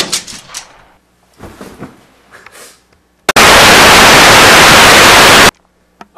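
A loud crack right at the start, then a few rougher noisy bursts, then about two seconds of loud, even TV static hiss that starts and cuts off abruptly: the sign of a lost live video feed.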